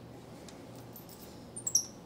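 White-faced capuchin monkey giving a quick run of short, very high chirps that fall in pitch, about a second and a half in, against a quiet room.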